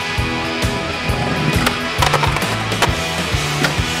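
Music with a steady bass line and beat, mixed with skateboard sounds: wheels rolling on concrete and sharp wooden clacks of the board popping, landing and hitting a concrete ledge, a cluster of them about two seconds in.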